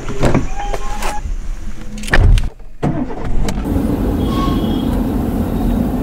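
Car door handle clicking and the door opening, then a heavy thud about two seconds in. After a short break, steady engine and road noise inside a moving car's cabin.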